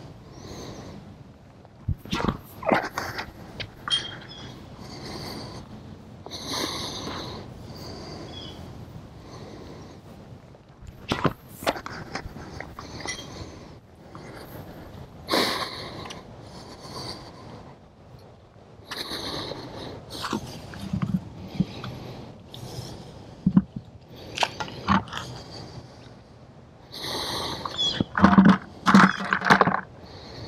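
Breathing and clothing rustle on a clip-on lapel microphone, with several sharp knocks scattered through. Near the end there is a louder stretch of rubbing and bumps as the microphone comes close to the camera.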